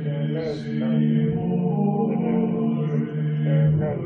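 Background music: a slow chanted mantra, long held sung notes over a steady low drone.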